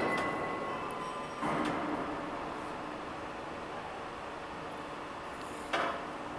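Heavy-gauge U-channel roll forming machine running with 6 mm steel sheet in its forming rollers: a steady mechanical hum with faint high steady tones. Louder noisy surges come at the start, about one and a half seconds in, and just before the end.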